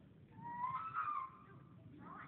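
A child's high-pitched wordless squeal that rises in pitch and holds for about a second.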